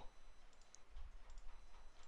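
A few faint computer mouse clicks, scattered and irregular.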